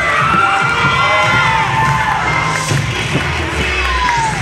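Crowd of spectators cheering and shouting, many high voices at once, with music playing underneath.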